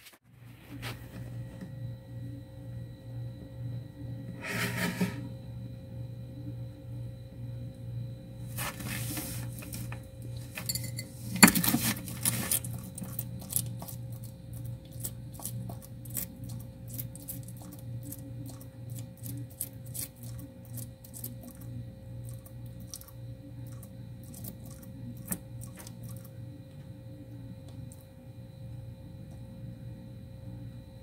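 A bearded dragon feeding on live roaches from a ceramic bowl. There are a few louder knocks and clatters in the first dozen seconds, then a long run of small, quick crunching clicks as it chews, over a steady low hum.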